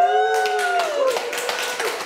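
A small group cheering with a long held 'woo' and laughing, then clapping by hand through the rest.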